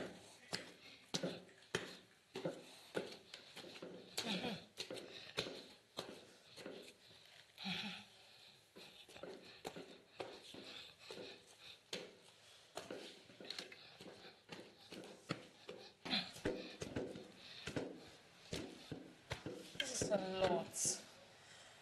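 A wooden pestle pounding boiled yam in a wooden mortar: a faint, steady run of dull thuds at an even pace, the stroke of making pounded yam.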